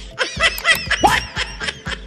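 Laughter in a quick run of short, high-pitched giggles, over background music with a low, steady beat.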